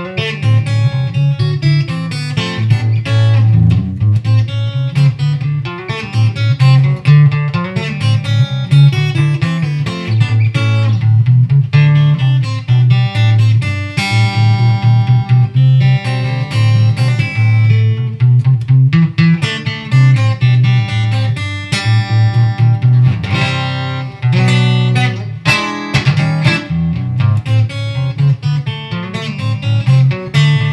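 LaVoce Z-Glide Custom guitar played through its piezo bridge pickup, giving an acoustic-like tone: fast picked single-note lines over ringing low notes, with chords left to ring about halfway through.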